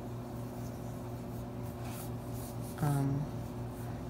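Fingertips rubbing and brushing across a textured black leather tablet case, over a steady low electrical hum. A short hummed voice sound comes about three seconds in.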